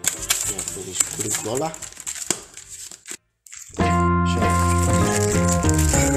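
Packaging being handled: plastic and box rustling with short clicks and rattles, under music, for about the first three seconds. After a brief cut to silence, loud background music with held notes comes in about four seconds in.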